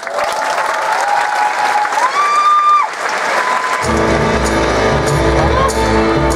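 Audience applauding while music plays. About four seconds in, fuller music with a deep bass comes in.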